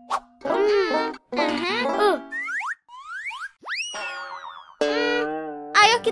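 Cartoon-style sound effects in children's music: after a couple of seconds of short voice-like sounds, three quick upward whistle-like glides, the last one sliding slowly back down like a boing, then a held musical chord.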